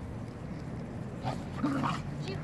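Stray dogs gathered at food, one giving a brief, short vocal sound about a second and a half in, over a quiet background.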